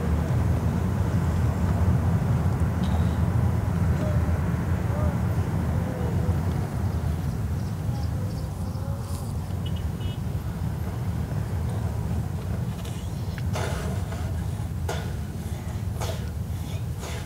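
Steady low rumble of a car's engine and tyres on the road, heard from inside the cabin while driving in traffic. A few short clicks or knocks come near the end.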